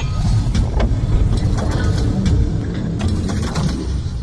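Intro sound effects: a loud, heavy low rumble with sharp clicks and hits scattered through it, as the logo's blocks come together.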